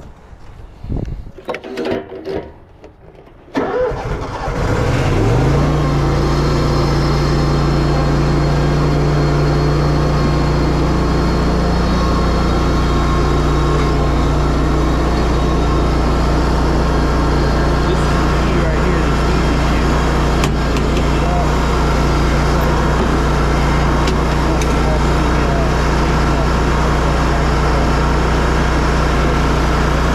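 Toro zero-turn mower engine starting about three and a half seconds in, its speed rising over a second or so and then running steadily.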